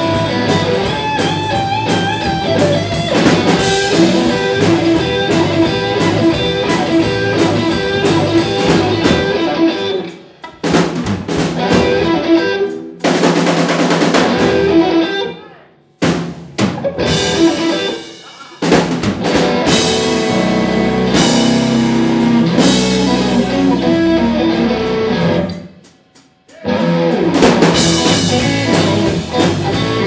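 Live band playing with electric and acoustic guitars and a drum kit. The music stops dead several times, about a third, half and most of the way through, then comes back in: stop-time breaks in the arrangement.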